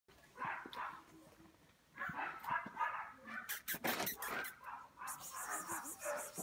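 Pug puppy making short yips in several brief bursts.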